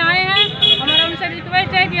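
A woman speaking in Hindi, continuously, over a steady low background rumble.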